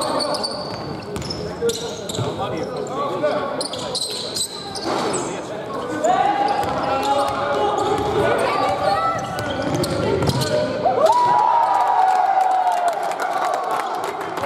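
Basketball being dribbled, with repeated ball bounces and short high squeaks of sneakers on a hall floor during play, under players and coaches shouting calls.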